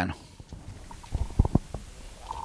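Handling noise from a handheld microphone being passed from one hand to another: a few low thumps and rubs, clustered from about a second in.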